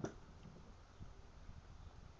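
Quiet background with a faint low rumble and no distinct sound event.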